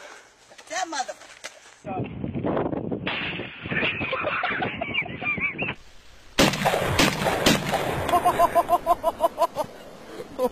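A few sharp gunshots from a handheld firearm about six and a half to seven and a half seconds in, amid a woman's laughter, which carries on in rapid short bursts near the end.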